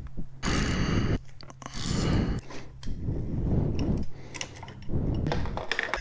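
Socket ratchet clicking as 10 mm handlebar clamp bolts are backed out, in several short bursts with pauses between them.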